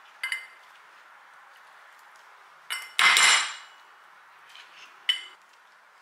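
Metal spoon scooping avocado flesh into a ceramic bowl: a few sharp clinks of spoon on bowl with a short ring, and a louder, longer thump and scrape about three seconds in.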